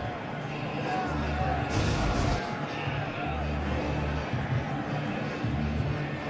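Stadium PA music with a heavy, repeating bass line, heard over the hubbub of the crowd.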